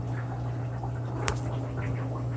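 A steady low hum with faint background hiss, and a single sharp click about a second and a quarter in.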